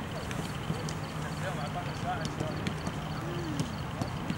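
Voices chatting in the background of a training pitch, with irregular sharp knocks of footballs being kicked, over a steady low hum.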